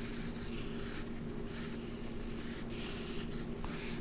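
Felt-tip marker writing on paper in a series of short scratchy strokes, with a steady low hum behind it.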